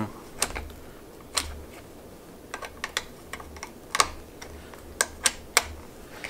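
Sharp, irregular clicks from a dirt bike's front brake lever adjuster being turned with a hand tool, clicking through its detent positions to set the lever's reach.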